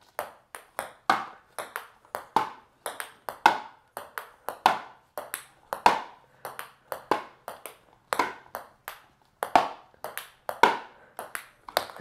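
Ping pong ball in a long rally on a hardwood floor: a steady run of light clicks, about two to three a second, as the ball bounces on the floor and is struck back by paddles.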